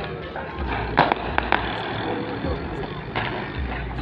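Scattered firecracker bangs from the town, several sharp cracks close together about a second in and another near three seconds, over a background of distant voices and music.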